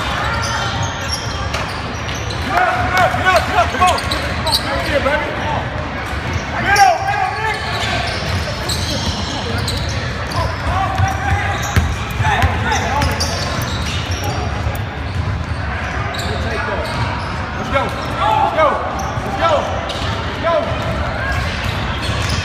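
Basketball game sound in a gym: a basketball bouncing on the hardwood court, with players' and spectators' voices calling out, echoing through the hall.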